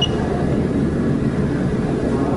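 Steady low hum of running equipment or room noise, with one short high click right at the start.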